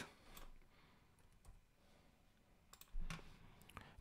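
Near silence with a few faint, scattered clicks of a computer keyboard and mouse, and a soft, short, low sound about three seconds in.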